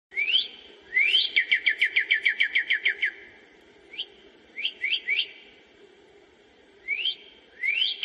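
A songbird singing: clear whistles sliding upward, then a quick run of about a dozen falling notes, then single rising whistles with pauses between.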